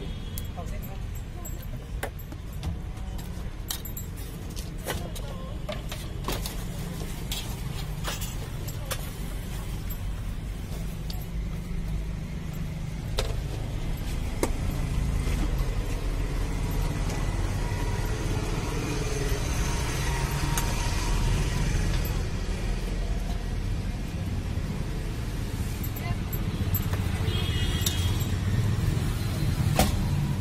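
Busy roadside ambience: a steady low traffic rumble and background voices, with scattered sharp clinks of a metal ladle against clay kullad cups and a steel tray as the cups are filled.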